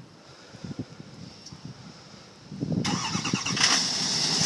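A Chevrolet Silverado 2500HD pickup's engine starting by remote start: about two and a half seconds in it cranks, catches and settles into a steady run.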